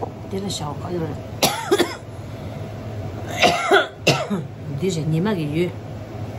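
A sick woman coughing several times, in a bout about a second and a half in and another from about three and a half seconds in, with her speaking in between.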